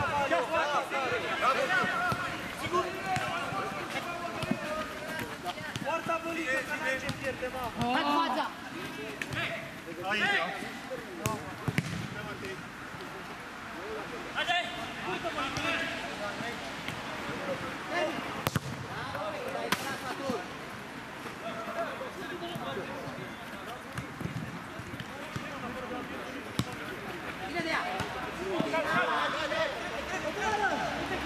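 Players' voices calling out during play, with a few sharp thuds of a football being kicked.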